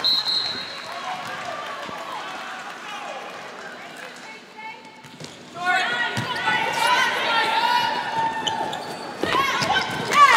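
Volleyball rally on an indoor hardwood court: a short referee's whistle blast at the start, then ball hits and, from about halfway through, a flurry of sneaker squeaks on the floor as players scramble, over gym crowd noise.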